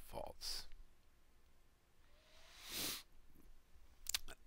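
A man's voice ends a word, then quiet room tone with one short hiss about three seconds in.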